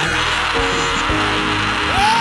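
Loud church band music: sustained keyboard-like chords with a few drum hits, playing on between prayer points.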